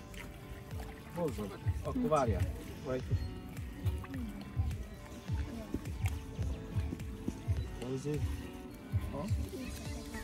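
Several people talking over steady background music, with light sloshing of shallow water around a landing net that holds a carp.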